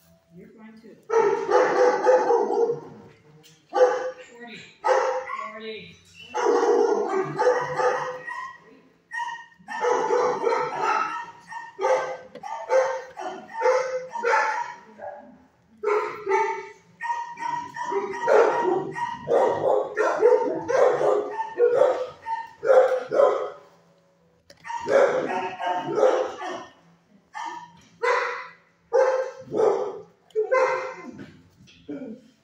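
Dogs in a shelter kennel barking over and over, in loud bursts with only brief pauses throughout.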